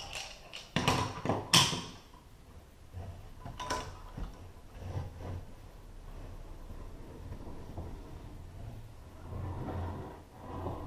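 Climbing hardware on a friction test rig being handled: a few sharp metal knocks and clanks about one to two seconds in, another near four seconds, then quieter, uneven rubbing and creaking of rope and hardware.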